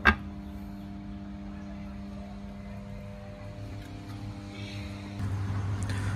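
Steady electrical hum from substation equipment, pitched on multiples of the mains frequency. A sharp click comes at the very start, and near the end the hum shifts to a lower, stronger tone.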